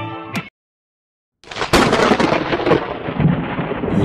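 Guitar music cuts off about half a second in. After about a second of silence, a loud rumbling noise with crackles starts suddenly and carries on to the end: an edited-in transition sound effect.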